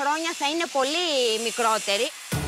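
A woman speaking in a high voice, in words the recogniser left untranscribed, over a faint hiss.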